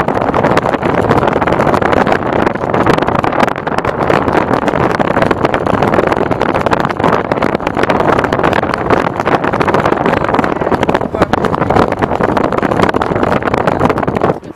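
Loud, steady wind rush and road noise inside a Ford Mustang convertible driving with the top down, the wind buffeting the microphone.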